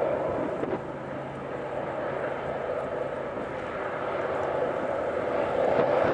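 BNSF diesel-electric locomotives leading a freight train, running with a steady engine drone and a low hum. The sound is louder at the start, dips after about a second and swells again near the end.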